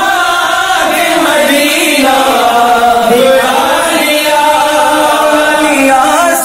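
A man singing a naat, an Islamic devotional song in Urdu, in long held notes that slide up and down in pitch.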